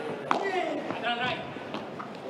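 A padel ball struck once by a racket, a sharp pop about a third of a second in, under a man's voice speaking.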